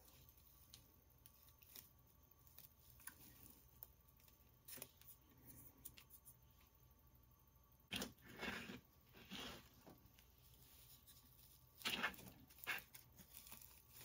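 Quiet handling noise: short bursts of dry rustling and crackling from a twig bird's nest being pressed and settled onto a glued platform, once about eight seconds in and again near the end.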